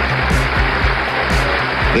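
A crowd applauding, a dense steady clatter of many hands clapping, with background music carrying a regular low beat underneath.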